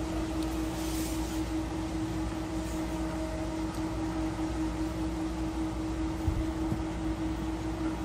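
Wind rumbling on a phone's microphone, over a steady hum.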